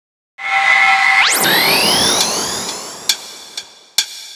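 Electronic intro of a karaoke backing track with the melody removed. A held chord begins just after the start, then a fast upward pitch sweep comes about a second and a half in, its tones gliding and fading away. Sharp beat hits come in near the end.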